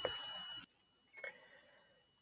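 Mostly quiet room tone: a faint hiss that stops after about half a second, a thin high whine running under it, and one small faint click a little past a second in.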